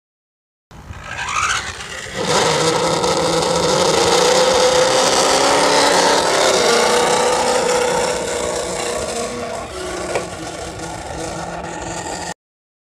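A car engine running at high, fairly steady revs, its pitch drifting slightly, easing off after about eight seconds and cutting off suddenly at the end.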